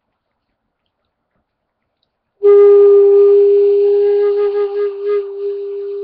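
End-blown rim flute, the breath split across the semicircular edge of its mouthpiece held against the lower lip, sounding one long held note with air noise. The note starts a little over two seconds in and eases slightly in loudness toward the end.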